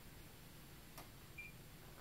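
Near silence: room tone, with one faint sharp click about halfway through and a very brief high chirp just after it.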